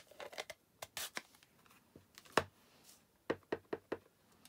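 Small plastic clicks and knocks as a stamp ink pad is handled and opened, then about four quick light taps near the end as a clear stamp on an acrylic block is inked on the pad.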